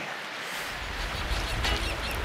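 Small waves washing onto a stony shore, a steady hiss of water, with a low rumble joining about half a second in.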